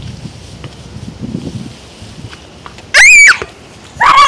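A child's short, loud, high-pitched scream about three seconds in, startled by a kicked ball flying at his face, after a few seconds of low rumble from wind and handling on the microphone.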